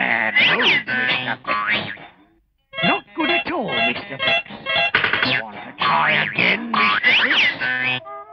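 Comic cartoon music full of sliding, boinging pitch swoops, which stops briefly a little over two seconds in and then starts again.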